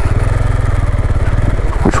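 KTM 390 Adventure's single-cylinder engine running steadily, an even low pulse.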